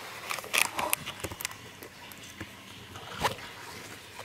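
Soft rustling and scattered clicks as the leaves of pepper plants brush against a handheld camera, with camera handling noise. The clicks are busiest in the first second and a half, with one sharper click about three seconds in.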